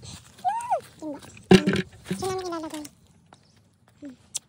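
A high-pitched voice making short wordless calls, one rising and falling, then a longer held one, with a sharp knock about a second and a half in.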